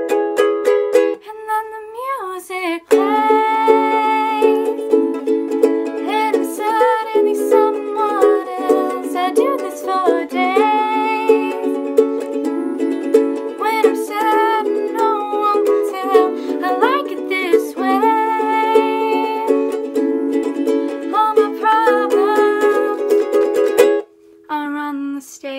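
A ukulele strummed as accompaniment, with a woman's voice singing a pop melody over it. The strumming thins briefly just before the singing comes in, about three seconds in.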